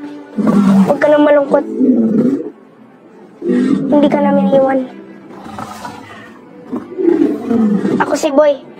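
A film dragon's low growling, heard about two seconds in and again near the end, between lines of spoken dialogue over background music.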